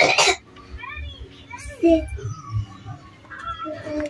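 A woman coughs once about two seconds in, while a small child's voice chatters faintly in the background.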